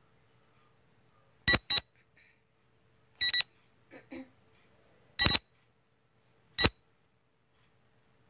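Quiz countdown timer sound effect: short, sharp electronic alarm-clock-style beeps every second and a half to two seconds, the first three doubled and the last single.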